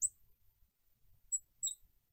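Faint, brief squeaks of a marker on a glass lightboard: one at the start and two more past the middle, each a thin high-pitched chirp.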